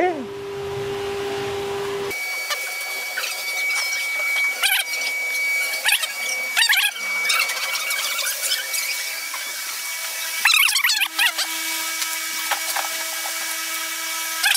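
Woodworking-shop power tools running, a steady high whine with a few brief sliding high-pitched squeals. The sound changes abruptly about two seconds in, from a lower steady hum to the higher whine.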